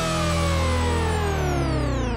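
Electronic intro sting: a held synth sound that slides steadily down in pitch over a steady low bass, beginning to fade near the end.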